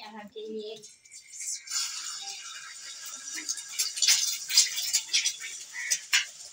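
Egg dropped into hot oil in a frying pan, sizzling and spitting. The sizzle starts about a second and a half in and carries on with many small crackles.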